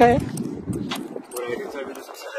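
A man's speech cuts off, then faint distant voices with scattered light clicks.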